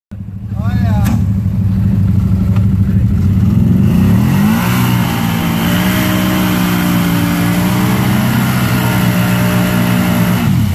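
Can-Am Maverick Turbo side-by-side engine running at low revs, then revving up about four seconds in and held at high revs as the wheels spin in deep mud: the machine is stuck in a mud hole.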